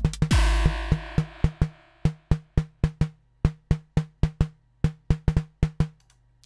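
FXpansion Tremor drum-synth pattern playing: kick hits and a long crash wash in the first couple of seconds, then a run of short, dry synthesized snare hits, about five a second, that stops just before the end. The snare is an early stage of a realistic-snare patch: a triangle oscillator tuned near D sharp 2 plus noise, driven hard into a resonant two-pole peak filter set around 70 Hz, and already starting to sound like a snare.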